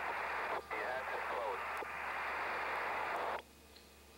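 A radio voice transmission buried in heavy static, its sound squeezed into a narrow telephone-like band over a steady low hum. The transmission cuts out abruptly about three and a half seconds in.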